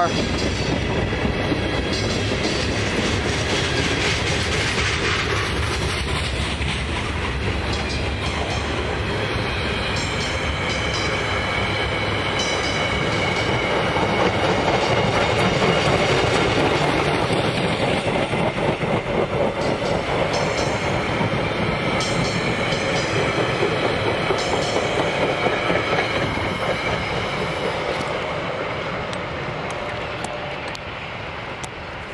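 A freight train rolls past close by, first tank cars and then a string of bilevel passenger coaches. Its steel wheels click over the rail joints with a faint high squeal, and the sound fades near the end as the rear of the train moves away.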